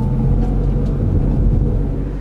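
Car driving along a winding road, heard from inside the cabin: a steady low engine and road rumble.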